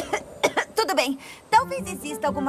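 A cartoon character's voice coughing several times in short bursts, choking on smoke, with a hoarse voiced sound near the end.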